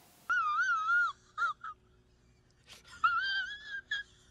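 A man crying in a high, wavering falsetto wail. There is one long cry near the start, a couple of short sobs, and a second long wail near the end.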